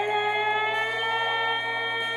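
A woman singing one long held note that rises slightly in pitch.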